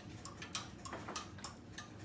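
A few faint, irregular small clicks and ticks.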